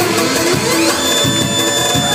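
Amplified live band music through PA speakers: an instrumental passage with a steady beat.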